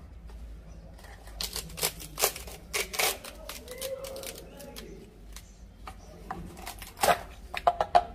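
A dry, split baobab fruit pod being handled and turned over on a plastic tray: scattered dry crackles and taps from its brittle husk, fibres and chalky pulp, clustered between about one and three seconds in and again near the end.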